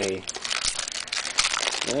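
Foil trading-card pack wrapper crinkling as it is handled, a dense run of small irregular crackles.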